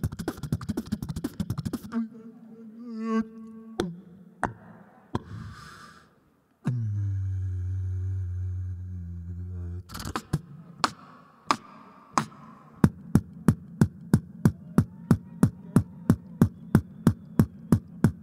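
Human beatboxing through a handheld stage microphone: a quick run of clicks and snares, pitched vocal tones, then a held low bass hum from about seven to ten seconds in. A steady beat of sharp clicks, about four a second, follows.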